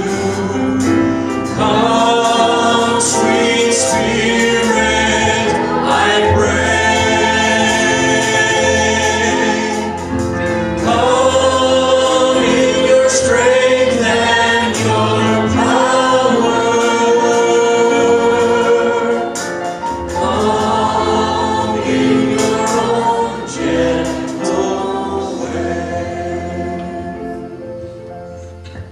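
Gospel worship hymn sung by men's voices over microphones, accompanied on keyboard, the song dying away over the last few seconds.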